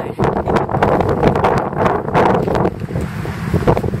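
Strong wind blowing across the microphone in loud, uneven gusts.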